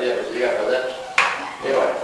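A person's voice, with one sharp click about a second in.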